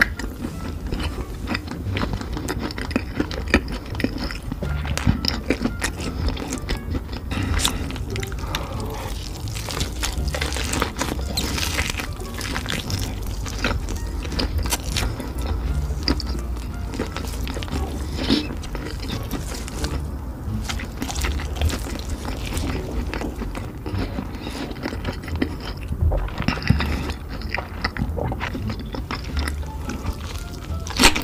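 Close-up wet chewing and biting of thick roasted pork belly, with many short smacking clicks, over background music with a steady low bass.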